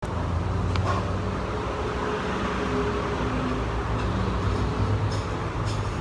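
Steady low background rumble and hiss of the surroundings, with a faint click about a second in.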